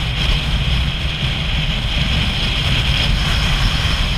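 Motorcycle riding at steady road speed: the engine's low drone under wind rushing and buffeting over the microphone.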